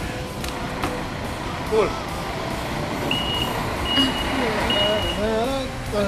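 Steady street traffic noise, with three evenly spaced high electronic beeps about halfway through.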